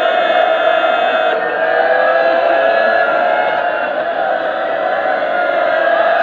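A large crowd of male Shia mourners crying out together in a loud, sustained chant during matam.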